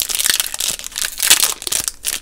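Foil wrapper of a 2020 Bowman Platinum baseball card pack crinkling as it is peeled open by hand, in quick irregular crackles.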